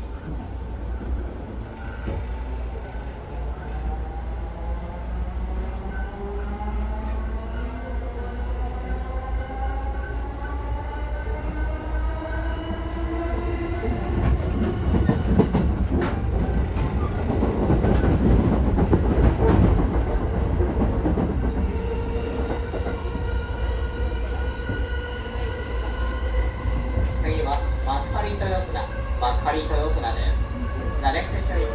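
JR 209 series 500-番台 electric train accelerating from a stop, heard from inside the passenger car: a whine of several tones rises steadily in pitch for the first dozen seconds while the rumble of wheels on rail grows, loudest about halfway through, then the tones level off as the train runs on.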